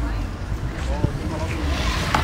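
Busy street ambience: a steady low rumble of road traffic, with faint snatches of passers-by talking.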